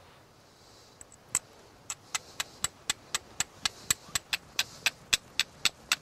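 A flint blade struck repeatedly against a nodule of iron pyrites to throw sparks, sharp scraping clicks. After a couple of tentative strikes in the first two seconds they settle into an even rhythm of about four a second.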